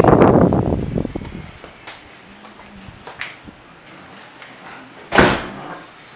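A glass sliding door: a rough rolling rumble that fades over the first second and a half, then a sharp bang about five seconds in as it shuts against its frame.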